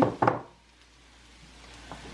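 Two quick knocks of a wooden spoon against a frying pan, followed by a faint steady hiss of the stock heating in the pan that grows slightly louder.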